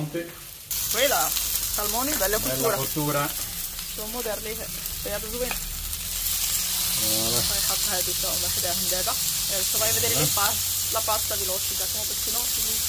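Salmon steaks and shrimp skewers sizzling on a hot flat griddle; the sizzle grows louder about halfway through as raw shrimp skewers are laid on the hot plate. Voices talk underneath.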